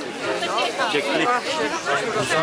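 Spectators chattering, several voices talking over one another close by.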